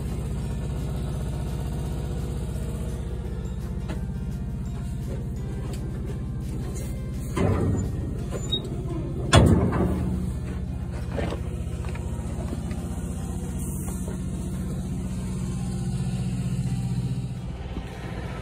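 John Deere CP770 cotton picker's diesel engine running steadily at idle, a low even hum, with two brief louder sounds about seven and nine seconds in.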